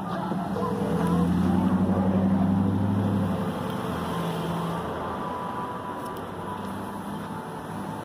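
Street traffic at a city intersection: a vehicle's engine running close by, louder from about one to three seconds in, then fading under the general traffic noise.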